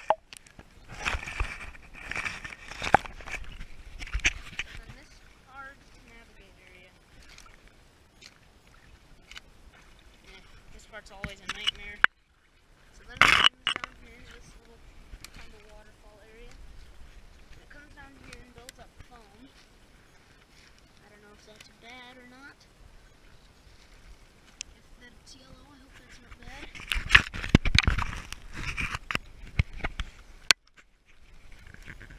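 Footsteps wading and splashing through a shallow creek and pushing through twigs and dead leaves, loudest in the first few seconds and again near the end. A sharp knock about halfway through.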